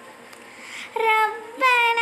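A child's high voice chanting an Arabic dua (supplication) in long held notes. It begins about halfway through, after a quiet pause.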